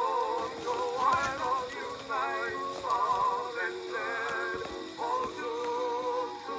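Vintage 1920 recording of a singer with chorus: held sung notes with a wide vibrato, over a steady record hiss with occasional clicks.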